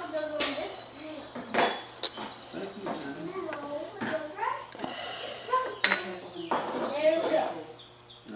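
Light metal clicks and clinks from a small Tecumseh carburetor's float bowl and parts being worked apart by hand. There are a few sharp ticks, the loudest about two seconds in.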